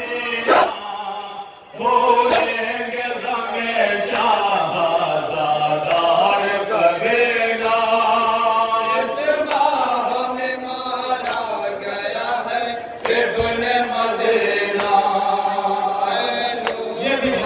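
Group of male voices chanting a Shia nauha (Muharram lament) in long held phrases, crossed now and then by sharp slaps of hands striking chests in matam.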